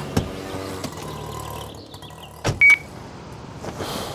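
Road traffic: cars and motorbikes running, with a sharp knock about two and a half seconds in followed by a short high beep.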